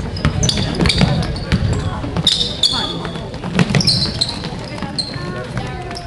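Basketball game play on a hardwood court: a ball bouncing in repeated knocks, with several short, high sneaker squeaks on the floor and faint spectator voices behind.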